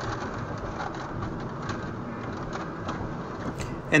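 Dash cam's recorded soundtrack of a car driving: steady road and engine noise heard from inside the cabin, played back with a dull, cut-off top end.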